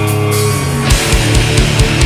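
Post-hardcore band playing live at full volume: guitars ring on a held chord, then about a second in the drums and bass come in with a fast, even kick-drum beat and cymbal hits.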